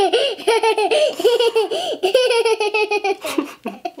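A young girl laughing hard: a long, high-pitched run of quick ha-ha-ha pulses, about four or five a second, that stops a little after three seconds in.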